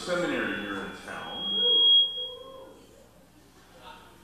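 A man's voice for about a second, then a single high-pitched steady tone that swells and fades out over about a second and a half: PA microphone feedback whistling.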